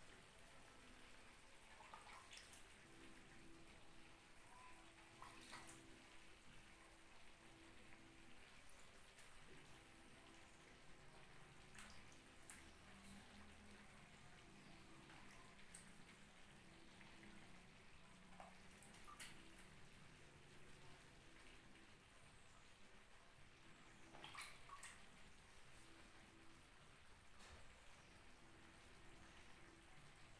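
Near silence, broken by a handful of faint, sharp taps as peeled sweet-potato slices are set down one at a time on the vegetables in a clay tagine.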